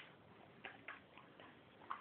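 Near silence, with a few faint light ticks from a dog close by.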